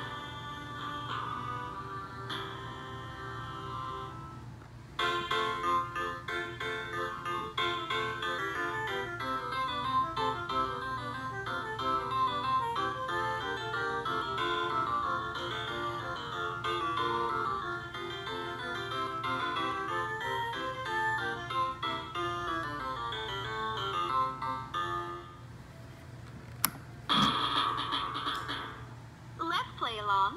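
Electronic toy-drum music from a LeapFrog Learn & Groove Color Play Drum's small speaker: a synthesized melody of separate notes that gets louder about five seconds in and stops a few seconds before the end. Near the end a sharp click as the toy's switch is moved, then a short burst of sound from the toy.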